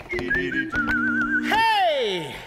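Barbershop quartet singing a cappella. Low voices hold close-harmony chords while a thin, high line warbles above them. About one and a half seconds in, a voice slides down in one long fall from high to low.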